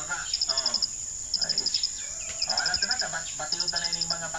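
An insect chirping in short trains of rapid high-pitched pulses, each train about half a second long and repeating about every second and a half, over a steady high drone. Other pitched calls sound faintly in between.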